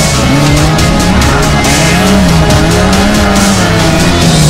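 Lada VFTS rally car's engine revving hard, its pitch rising and falling again and again through gear changes, mixed with a backing music track.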